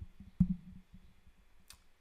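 A single sharp click with a dull low thump about half a second in, followed by a few faint ticks and a faint high click near the end.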